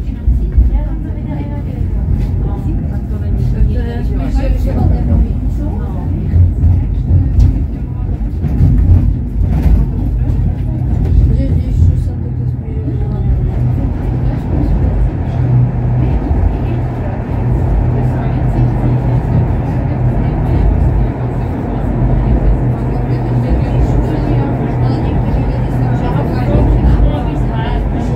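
Inside a moving funicular railcar: a continuous low rumble of the car running down its steep track, with voices talking over it in the first half. About halfway through, a steadier hum takes over.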